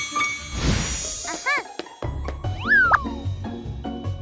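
Cartoon sound effects over upbeat children's background music. A whoosh comes about half a second in, then a few short bouncy pitched blips. After a brief drop-out the music restarts with a steady beat, and a quick pitch glide goes up and then down.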